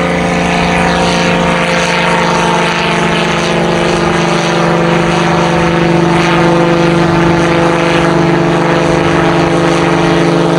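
Helio Courier single-engine propeller airplane climbing overhead after takeoff, its piston engine and propeller running with a steady pitched hum that grows slightly louder.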